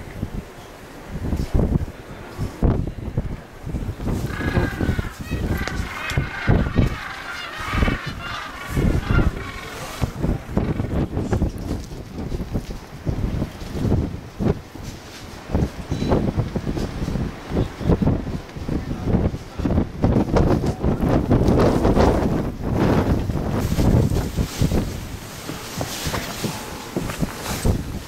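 Strong, gusty wind buffeting the microphone in a sleet and snow storm, with irregular low rumbling blasts throughout.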